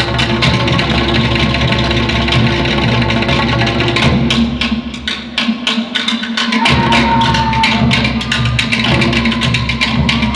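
Live Tahitian drum ensemble playing a fast ori Tahiti beat: rapid strikes on wooden tō'ere slit drums over a deep pahu bass drum. About five seconds in, the deep drum drops out for about a second and a half, then comes back in.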